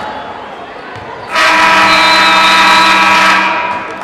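Gym scoreboard horn sounding one loud, steady buzz of about two seconds, starting suddenly a little over a second in, signalling a break in play.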